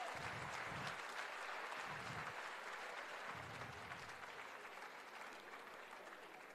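Audience applause in a hall after a poem ends: many people clapping together, slowly fading away.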